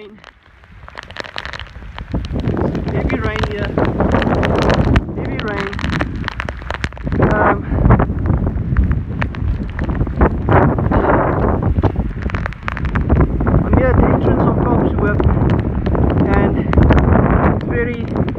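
Strong, gusty cyclone wind buffeting the phone's microphone, swelling and dropping unevenly after a quiet first second. A man's voice talks indistinctly through it.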